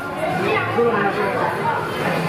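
Indistinct chatter of several people's voices, overlapping, with no clear words.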